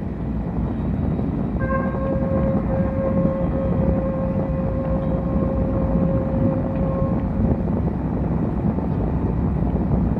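Live ambient electronic improvisation: a dense, low, noisy drone, with a clear held tone and its overtones entering about one and a half seconds in and fading out a couple of seconds before the end.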